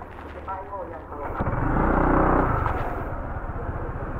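A motor scooter engine at idle swells up loudly for about a second and a half, then settles back down.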